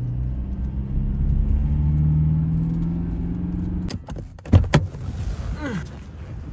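Car cabin hum from the engine and road while driving, fading away over the first few seconds. About four seconds in, the interior door handle clicks and the car door is opened, with a couple of sharp knocks.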